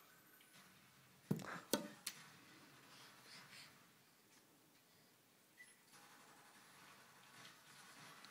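Three sharp knocks in quick succession about a second and a half in, from a baseball being handled against a batting tee; otherwise near silence.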